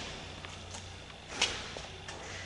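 Quiet room hiss with a few faint ticks, the loudest about one and a half seconds in.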